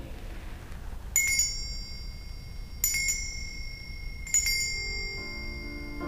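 Altar bells rung three times at the elevation of the chalice, about a second and a half apart. Each ring is a quick bright shake whose high tones hang on until the next. Soft keyboard music begins near the end.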